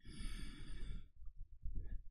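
A man breathing out audibly into a close microphone, a sigh-like breath about a second long, followed by faint small sounds.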